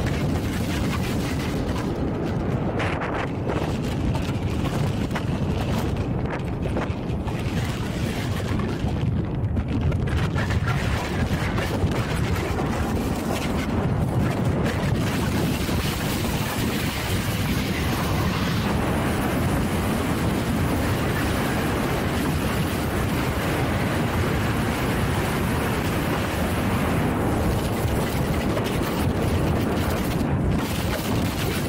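Wind buffeting the camera microphone on a moving bike: a steady, loud low rumble of rushing air, with no engine note.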